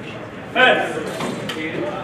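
A man's voice calling out in a large, echoing hall, starting about half a second in, with one brief sharp click shortly after.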